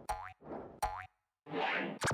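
Cartoon boing sound effects: two springy, rising boings under a second apart, each trailed by a soft rushing noise, with a swelling rush of noise near the end.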